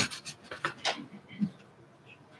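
A few faint clicks and breathy noises close to the microphone, dying away after about a second and a half into quiet room tone.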